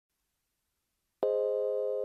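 Silence, then about a second in a keyboard chord sounds and is held steady: the start of a self-composed instrumental piece.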